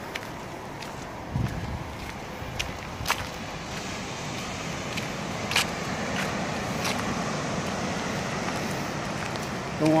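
Footsteps on a dirt and gravel trail, a scattering of irregular crunches and taps, over a steady wash of surf breaking below that grows fuller partway through.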